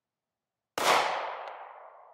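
A single 9mm pistol shot about three-quarters of a second in, its sharp crack ringing away over about a second and a half.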